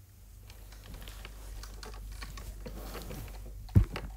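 Faint, rapid light clicking, like typing on a keyboard, with one sharper, louder tap near the end.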